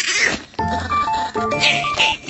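Background music of steady organ-like notes, with two short noisy bursts from a chihuahua puppy biting at a plastic snack bag, one at the start and one near the end.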